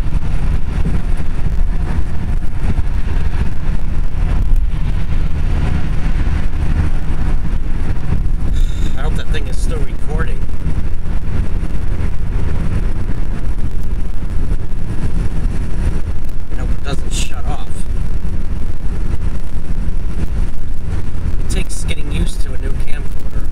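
Steady low rumble of road and engine noise inside a car cabin at freeway speed.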